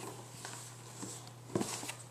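Quiet handling of a cardboard box as it is opened, with faint scuffs and a short louder scrape about one and a half seconds in.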